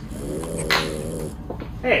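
A man snoring: one long snore lasting about a second and a quarter.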